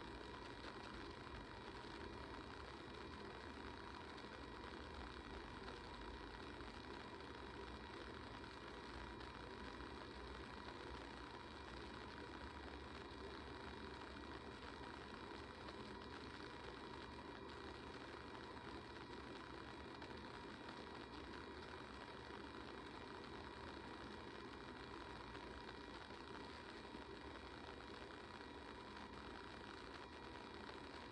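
Faint, steady room tone: an even hiss with a thin constant hum and no distinct events.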